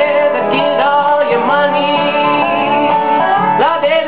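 Live acoustic blues: a strummed acoustic guitar and a Dobro resonator guitar played with a slide, its notes gliding up and down, under a man's singing voice.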